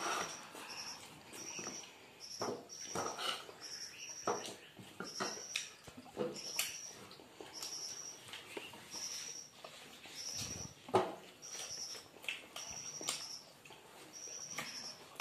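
Close-miked eating sounds: chewing, lip-smacking and fingers working rice and curry, in irregular clicks and smacks. Behind them, a short high chirp repeats a little more than once a second.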